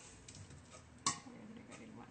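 A single sharp clink about a second in, a utensil striking the stainless steel stand-mixer bowl as mashed banana is added; otherwise only faint room sound.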